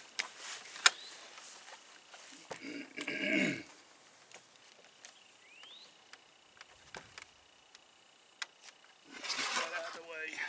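Quiet handling of an AR-style rifle at a shooting bench: one sharp click about a second in and a few faint ticks later, with no shots fired. A short low voice-like sound falling in pitch comes around three seconds in.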